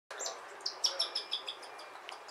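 Cockatiel chick giving a quick run of short, high chirping calls, speeding up to about six a second: the food-begging calls of a chick being hand-fed.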